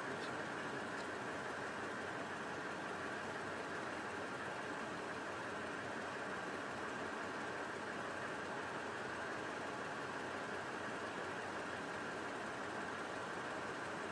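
Steady background hiss with no distinct events: an even, unchanging noise.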